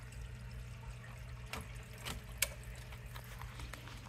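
Water trickling and dripping in an aquarium sump, faint and steady over a low hum, with a few sharp ticks, the loudest about two and a half seconds in.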